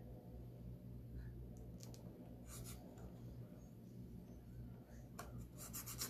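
Faint rubbing and rustling of hands pressing and smoothing a silk-screen transfer down onto a board, with a few soft scrapes and denser rustling near the end, over a steady low hum.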